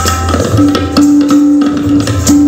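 Kathak dance accompaniment: tabla strokes in a steady rhythm over a short melodic phrase repeated on a held note. A deep drum resonance in the first half-second drops away.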